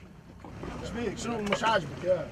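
Men's voices speaking over the low, steady rumble of boats alongside each other on the water.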